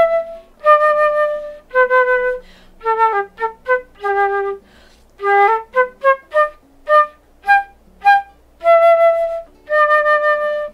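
Concert flute playing a quick tune in G major, a mix of short detached staccato notes and longer held notes, with brief breaths between phrases.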